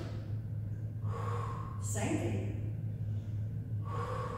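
A woman breathing audibly with effort during a lying core and leg exercise: several short, partly voiced breaths over a steady low hum.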